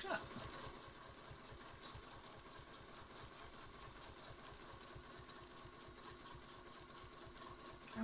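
High-shank domestic sewing machine running steadily at an even, fast stitching rhythm, sewing a straight line alongside a ruler held against its ruler foot.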